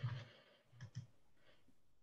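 A few faint clicks: two close together about a second in, and a fainter one shortly after.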